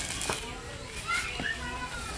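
Indistinct children's voices and chatter in the background, with a few light clicks.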